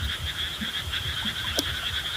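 Frogs calling in a steady chorus, a continuous high-pitched pulsing trill, over a faint low rumble.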